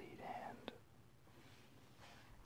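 A whispered voice trails off in the first half second, followed by a single short click about 0.7 s in, then near silence.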